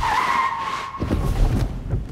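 A car's tyres screeching under sudden hard braking: a squeal that starts abruptly and holds steady for over a second, then fades into a low rumble.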